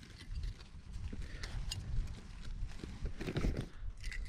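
Handling of a small folding gas canister stove: a few light clicks as its metal pot-support arms are moved, over a low wind rumble on the microphone.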